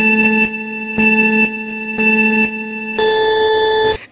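Countdown beep sound effect: three short beeps a second apart, then one longer, higher beep that signals the start, like a race-start countdown.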